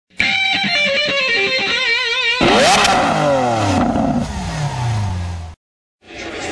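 Intro sting: a wavering electric-guitar riff, then a loud vehicle-engine effect that revs up and falls in pitch as if passing by. It cuts off suddenly about half a second before the end.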